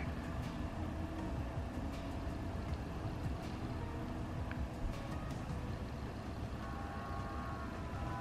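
Low, steady background rumble with a faint hum and a few soft clicks: quiet room noise.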